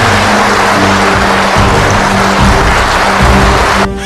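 Sustained applause from a seated audience in a large hall, with music playing underneath; it cuts off suddenly near the end.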